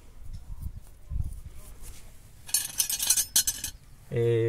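Light metal clinking: a quick run of small sharp clinks lasting about a second, starting past the middle.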